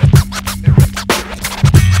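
Instrumental hip-hop beat: hard kick and snare hits over a held bass line, with turntable scratching.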